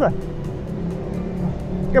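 A motorbike passing on the street, its engine heard under background music with steady held notes.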